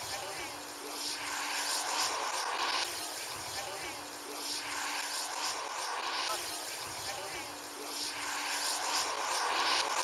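Model airplane engine running in flight, a steady drone that swells and fades every three to four seconds.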